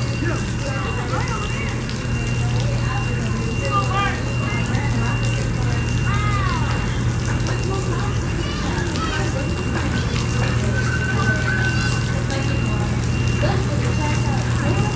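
Outdoor ambience: indistinct distant voices and many short rising-and-falling chirps over a steady low hum.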